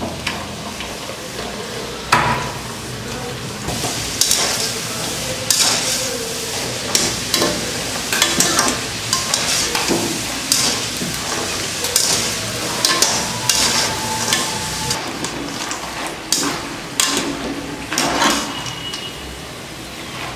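Small pieces of maida dough deep-frying in hot oil in a metal kadai, with a steady sizzle. Throughout, a wire-mesh spider skimmer stirs them and makes repeated short scrapes and clinks against the pan.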